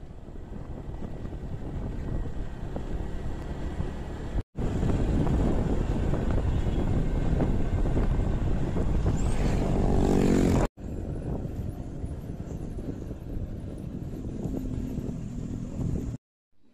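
Wind and road noise of a moving vehicle, in three clips joined by abrupt cuts. In the middle clip an engine rises steadily in pitch for about a second and a half just before the cut.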